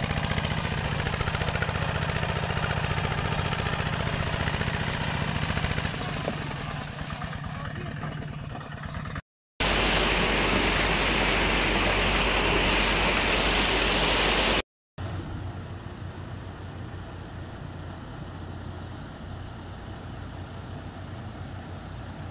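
Single-cylinder diesel engine of a two-wheel walking tractor running steadily as it pulls a loaded trailer, with a regular beat, growing fainter after about six seconds. After a cut at about nine seconds comes a loud, even rushing noise, and after another cut near fifteen seconds a quieter rush with a low hum.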